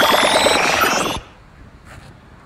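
Synthesized robot-malfunction sound effect: a rapid electronic buzzing pulse, about eleven beats a second, under a rising whine and falling high tones, marking the robot's breakdown. It cuts off suddenly just over a second in.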